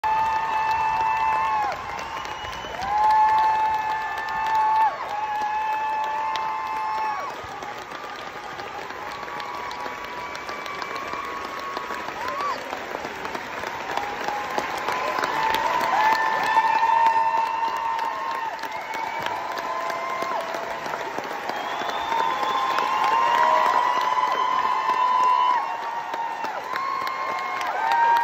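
Theatre audience applauding and cheering, with many long, high held whoops over the clapping; the clapping eases off somewhat in the middle and swells again later.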